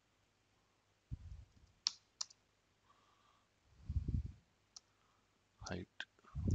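A few separate computer keyboard keystrokes clicking as code is typed, with short, low, muffled sounds in between.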